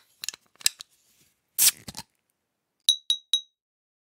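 Sound-effect sequence: a few sharp clicks, a short scraping swish, then three quick bright glassy clinks about a quarter-second apart.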